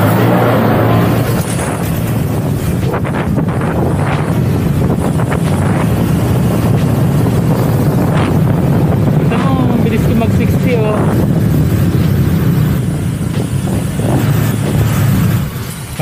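Honda Click scooter's engine and CVT drive running steadily under throttle while riding, with wind on the microphone. The rider hears a whine from it under acceleration and suspects the new JVT CVT set's 1,200 rpm center spring is not right for his setup.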